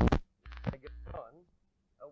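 A man's voice speaking a few words, then a short pause near the end.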